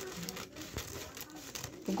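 Scissors cutting through thin kite paper, the paper crinkling faintly as it is held and trimmed.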